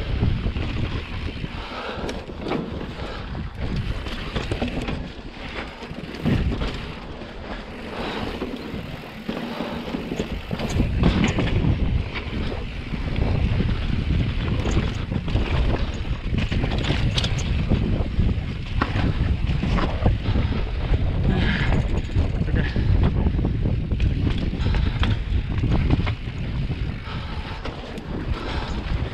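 Mountain bike rolling down rocky slickrock and ledges, its tyres and frame knocking and rattling over the rock, under steady wind rumble on the action camera's microphone.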